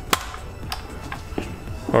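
Sharp clicks from the plastic mass airflow sensor housing and its wire retaining clips as the clips are released and the sensor is worked loose: one just after the start, another about half a second later, and a fainter one after that.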